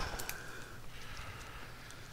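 Quiet room tone with a steady low hum and a few faint ticks.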